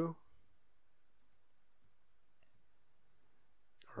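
A few faint computer mouse clicks over a low steady hiss.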